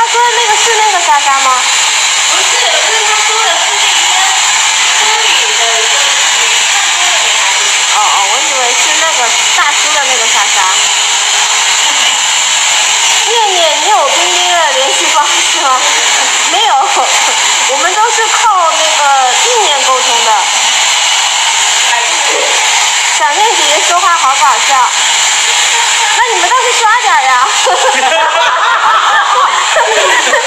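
Handheld hair dryer running steadily while a stylist blow-dries and brushes hair, a constant even rush of air.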